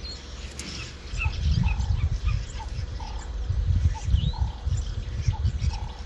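Thunder rumbling low and unevenly from about a second in, with small birds chirping over it.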